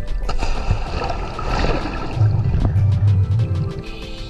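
Background music with a loud rush of churning underwater bubbles as a diver enters the water, and a heavy low rumble in the second half.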